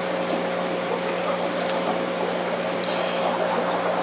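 Aquarium filtration running in a fish room: water bubbling and trickling over a steady low mechanical hum.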